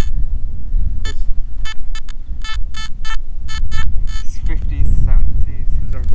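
Nokta Makro metal detector sounding on a buried target: about a dozen short, high beeps in quick succession as the coil is swept back and forth over the spot. Wind rumbles on the microphone throughout.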